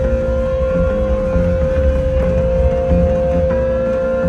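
Live rock band playing electric guitar, bass and keys, recorded from the audience, with heavy bass and a steady tone held underneath.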